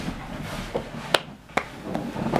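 Two short, sharp clicks about half a second apart over quiet room sound.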